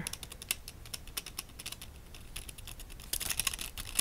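Irregular light crackling and clicking, busier near the end, as an artificial flower with shiny foil-like petals is handled close to the microphone.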